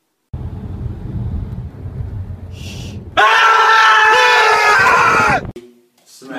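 Low road rumble heard inside a moving car. About three seconds in, a loud, held, high-pitched sound begins and lasts about two seconds before cutting off suddenly.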